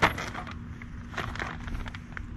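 Crinkling and rustling of a clear plastic document sleeve and cardboard as a manual is lifted out of a box, opening with one sharp tap followed by a few short scattered rustles.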